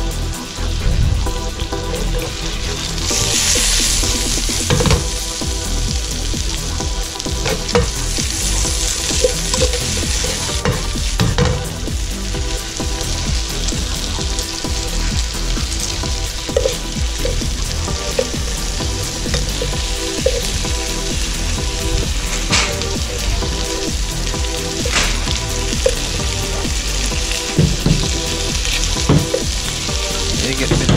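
Pieces of blue throat wrasse fillet sizzling steadily as they fry in hot oil in a pan, the hiss swelling a couple of times, with a few short sharp clicks.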